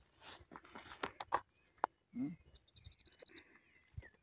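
Faint pasture sounds: scattered clicks and rustles, a short low call about two seconds in, and a quick, high bird trill near three seconds.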